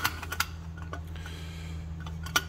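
A sharp metal click, then a few lighter clicks in the first half second, as the heater's metal shell and threaded rods are turned over in the hands. After that only a steady low hum remains.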